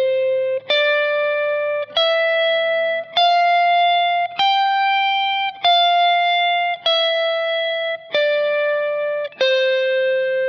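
Fender Stratocaster electric guitar playing the major scale in shape 3, around the twelfth fret, one sustained single note at a time, slowly and evenly, about a note a second. The notes climb to the highest one about four seconds in, then come back down.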